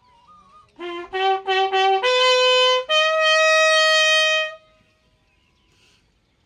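A bugle sounding a funeral call for a police guard of honour: a quick run of short notes about a second in, then two longer notes, each higher than the last, the second held for about a second and a half before it stops.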